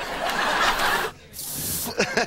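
Studio audience laughing, with a short sharp hiss about a second and a half in.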